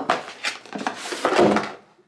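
Cardboard box being opened by hand: several irregular rustling scrapes of card as its flaps are pulled open, the loudest about a second and a half in.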